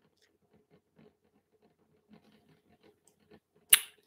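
Near silence with faint scattered clicks, then near the end a short, sharp mouth noise as a woman draws breath to speak.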